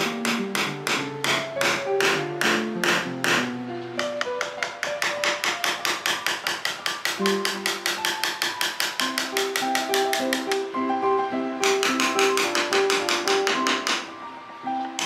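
Background music: a melody of short struck notes over a quick, steady beat.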